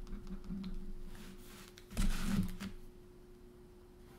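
Pen scratching and tapping on sketchbook paper in light, irregular strokes, with one louder scrape of noise about two seconds in. A faint steady hum lies underneath.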